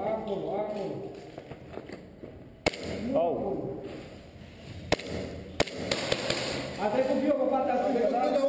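Men's voices talking, broken by three sharp cracks of airsoft fire, the last two close together, with a quieter stretch between the talk.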